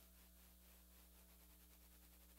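Near silence: a faint, steady electrical hum with light hiss.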